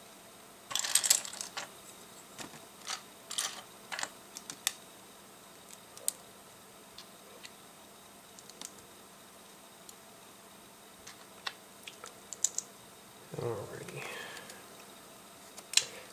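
Plastic LEGO bricks clicking and rattling as pieces are picked out of a loose pile and handled: a flurry of rattling about a second in, then scattered single clicks.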